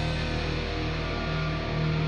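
Hard rock music played by a band, led by distorted electric guitars over bass.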